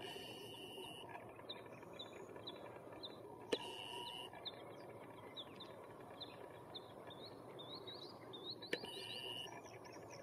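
Faint outdoor birdsong: a small bird repeating a short high chirp about twice a second, joined near the end by quicker arching calls, over a low steady background hum. Two sharp clicks stand out, about three and a half and nine seconds in.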